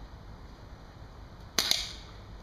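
Remington Airmaster 77 multi-pump air rifle firing a BB: one sharp pop near the end, with a second shorter click a split second after.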